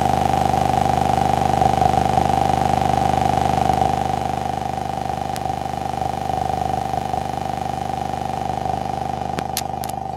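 Loud, steady electronic drone on the audio feed: a constant mid-pitched tone over hum and hiss, unchanging in pitch, easing a little about four seconds in, with a few sharp clicks near the end. It is typical of an audio fault or interference in the stream's sound.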